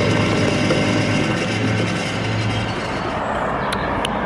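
Lavazza coffee vending machine running as it dispenses coffee into a paper cup: a steady motor hum under the rush of the pour. The hum stops about two-thirds of the way through, leaving a steady mechanical noise with a couple of sharp clicks near the end.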